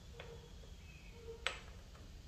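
Two light clicks, a faint one about a quarter second in and a sharper one about a second and a half in, as the metal oil filter cover is handled and seated against the engine case of a Honda CB250 Twister; otherwise quiet.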